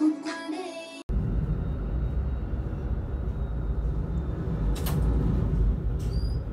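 Pop singing with music plays briefly and cuts off abruptly about a second in. It is followed by a loud, steady low rumble aboard a boat at sea, wind buffeting the microphone, with a single sharp knock near the end.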